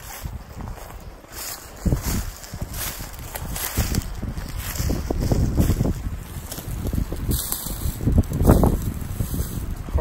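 Wind buffeting the microphone, with footsteps crunching through dry leaf litter and twigs at an irregular walking pace, louder in the second half.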